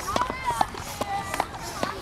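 Voices talking, unclear and partly off-mic, with a few sharp clicks.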